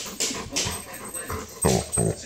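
Yellow Labrador retriever 'talking' close to the microphone with a few short breathy huffs and a brief low grumble near the end, the vocal begging of a dog asking to be taken outside.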